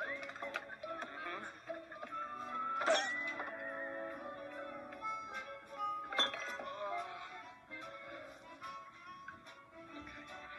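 Film soundtrack: background music under kitchen clatter and clinks, with a couple of sharp knocks partway through.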